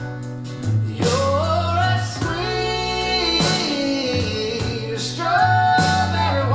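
Recorded country-soul song playing: a male singer holds and bends notes through an elaborate vocal riff and run over a slow band backing.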